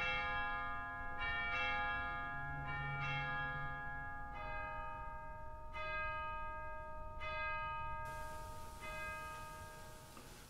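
Bells struck one after another, each note ringing on and fading, roughly one every second or so, at different pitches; the ringing dies down toward the end.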